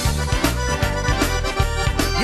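Zydeco band music led by piano accordion, over bass notes and a steady drum beat.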